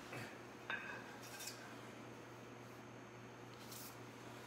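A single light metallic clink with a brief ring, a little under a second in, as the parts of a motorcycle jack are handled. It is followed by two faint brushing sounds.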